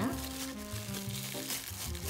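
Plastic cling wrap crinkling as it is peeled off a firm, chilled log of butter, over steady background music.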